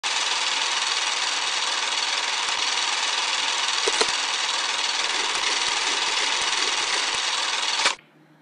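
Old-film sound effect: a steady hiss with scattered clicks, the crackle of film running through a projector, with one louder click about halfway and a sudden stop just before the end.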